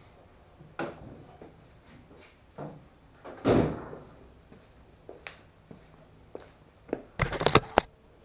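The steel door of a 1964 VW Beetle slammed shut about three and a half seconds in, one heavy thump with a short ring, after a faint click near the start. A few light knocks follow, and near the end comes a close cluster of clacks and rustles as the camera is picked up and handled.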